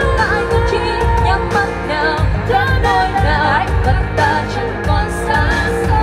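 A woman singing a pop song into a handheld microphone over instrumental backing music, her voice held and bent on long notes.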